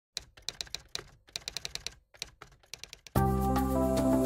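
Rapid clicks of typing keystrokes in irregular runs with short pauses, for about three seconds. Then music with held notes starts suddenly and is much louder.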